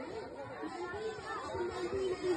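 Background chatter of several voices, at a lower level than the loud chanting on either side.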